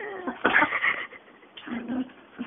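Small white dog making short whiny vocal sounds while rolling and rubbing on a fleece blanket, with a loud burst of fabric rustling about half a second in.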